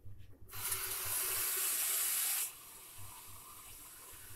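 Water running from a tap to fill a drinking glass: loud for about two seconds, then quieter as it runs on until near the end.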